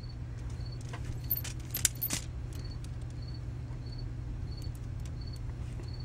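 Hard plastic LEGO Technic beams and pins clicking and rattling as a homemade model is handled, with a few sharp clicks in the first half, over a steady low hum.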